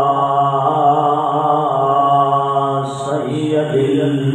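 A man's voice chanting a long, drawn-out melodic recitation into a microphone, the notes held and wavering. There is a brief break about three seconds in before the next phrase begins.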